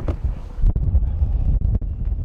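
Wind buffeting the microphone: a loud, uneven low rumble, with a few light knocks about halfway through and again near the end.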